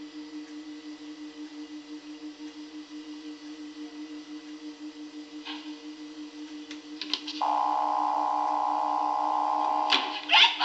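Electronic sound effects of the TARDIS: a low, pulsing electronic drone, then a few sharp clicks about seven seconds in, followed by a louder steady electronic hum to the end, as the TARDIS doors are shut and locked.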